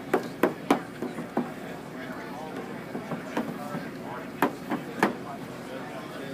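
Sharp clicks and knocks over a background murmur of crowd voices. There is a quick run of five in the first second and a half, then two more, about four and a half and five seconds in.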